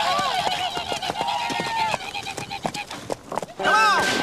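Several voices yelling over horse hooves. The yelling thins out about halfway through, leaving irregular hoofbeats, then returns loudly just before the end.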